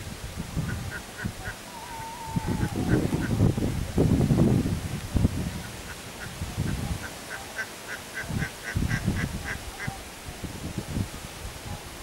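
A bird calling in quick runs of short, evenly spaced notes, about three a second, near the start and again through the second half. Bursts of low rumble from wind on the microphone, loudest a few seconds in.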